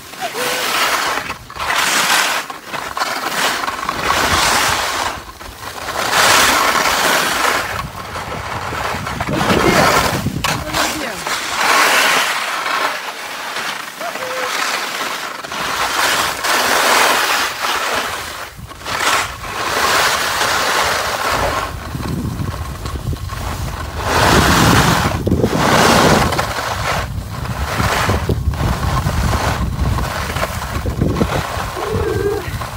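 Skis scraping and hissing over packed, groomed snow, swelling and easing with each turn about every two to three seconds. Wind rumbles on the microphone in the last third.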